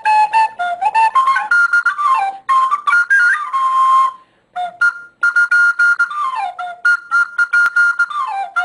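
Recorder played solo: a tune of separate tongued notes with quick stepwise runs up and down, a short break about four seconds in, then a long held high note near the end.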